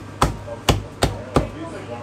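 Chinese cleaver chopping through cooked chicken onto a thick round wooden chopping block: four sharp chops, about three a second, stopping about a second and a half in.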